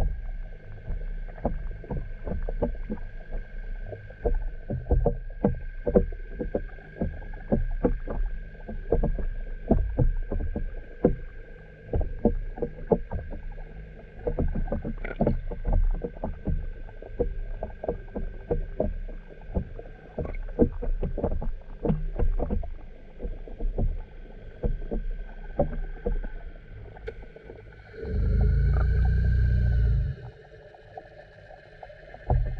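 Underwater sound picked up by a camera in its waterproof housing. A steady high hum runs under many irregular soft knocks and clicks. About two seconds before the end comes a loud low rumble.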